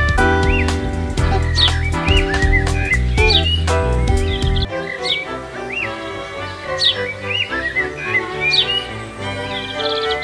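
Background music of sustained chords, with short bird-like chirps and a few falling whistles over it; the deep bass drops out about halfway through.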